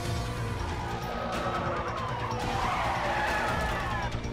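Film sound mix: tyres squealing in long gliding pitches through the middle and second half, over a car and a music score.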